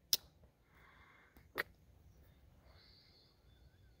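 Case XX 8254 full-size trapper slipjoint pocketknife's blades snapping into place under the backspring: two sharp clicks about a second and a half apart, the first louder.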